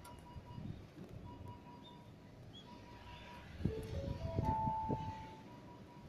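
Station public-address chime: four notes climbing in steps, each held under the next, about three and a half seconds in. This is the usual lead-in to a platform announcement.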